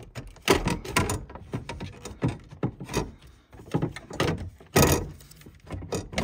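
A mounting bracket being slid and pushed into place under a plastic-cased CTEK Smartpass 120 charger: irregular knocks, clunks and scrapes of the bracket and housing. The loudest knocks come about half a second in and near the end.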